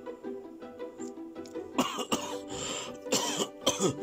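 A person coughing and clearing their throat several times in the second half, over background music with plucked strings.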